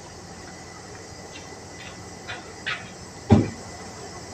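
Handling noises as a worker picks up a roll of stretch-wrap film: a few light scuffs, then one loud, dull knock a little past three seconds in.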